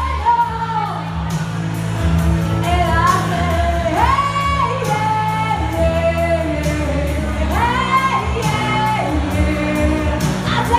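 A woman singing into a handheld microphone over amplified backing music with a bass line and a regular drum beat. Her voice slides up into notes and holds them, with a long high note about four seconds in.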